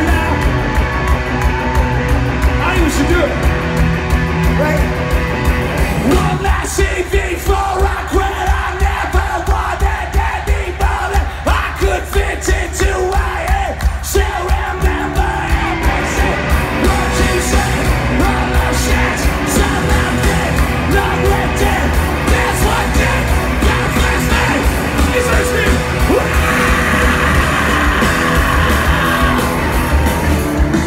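A live rock band playing loud through a concert sound system, with electric guitar, drums with a steady driving beat, and a sung lead vocal, heard from within the crowd as audience members yell along.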